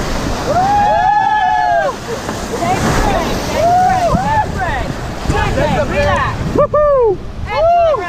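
Rafters shouting and whooping in a string of rising-and-falling yells over the steady rush of whitewater rapids. The sound goes briefly muffled about two-thirds of the way through.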